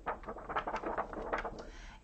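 Sheets of drawing paper rustling as they are handled and swapped, with several short crackles.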